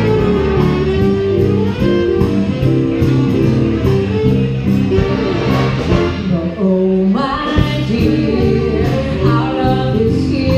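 Live big band playing a jazz standard, with guitar, drums and horns; a female vocalist's singing enters over the band about seven seconds in.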